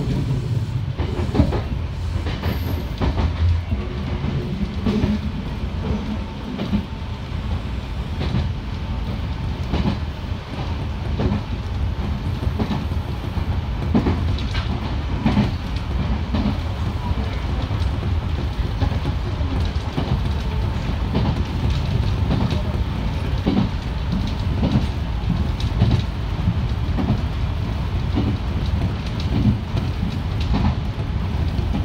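Nankai electric commuter train running at speed, heard from inside the front car behind the driver's cab: a steady low rumble with frequent clicks of the wheels going over rail joints.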